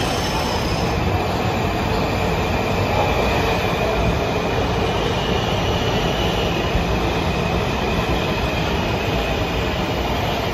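Washington Metrorail train running along the platform in an underground station: a steady, loud rumble of wheels and traction motors with a thin high wheel squeal over it, echoing under the station's vaulted concrete ceiling.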